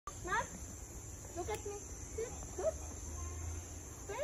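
Steady high-pitched insect drone, with four short rising calls over it.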